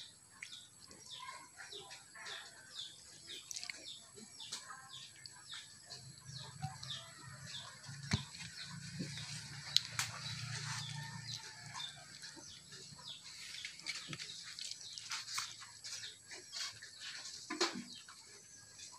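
Small birds chirping over and over in short, sharp high notes. A low hum runs underneath from about a third of the way in to past the middle.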